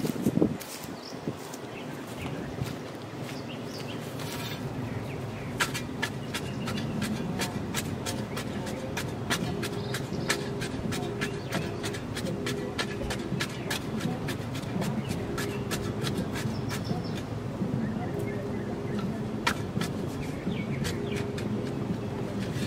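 A steel spade shovel working loose dirt into a fence post hole, breaking up clumps: many short, sharp clicks and scrapes of the blade against soil, over a steady low background noise.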